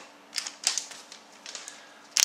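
Trading cards and a foil card pack handled on a tabletop: a few light clicks and rustles, the sharpest two close together at about half a second in, with softer ones around one and a half seconds.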